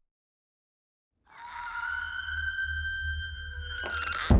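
Dead silence for about a second, then a sustained eerie tone over a low rumble swells in and holds steady: a drone in the trailer's score or sound design.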